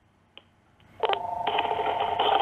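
A faint click, then about a second in a steady electronic tone on the phone line, heard while the call is on hold.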